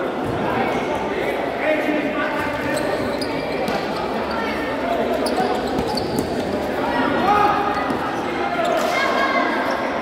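A futsal ball being kicked and bouncing on a hard indoor court, with players shouting and spectators chattering, all echoing in a large hall.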